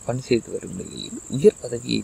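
A narrator's voice speaking in short phrases over a steady high-pitched whine.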